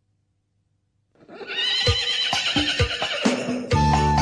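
After about a second of near silence, a Balinese pop song's recorded intro begins. A horse whinny sound effect arches up and falls away over a few drum hits, and the full band with bass comes in near the end.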